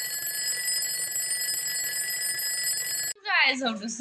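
Twin-bell alarm clock ringing continuously, a steady high jangle that cuts off abruptly about three seconds in.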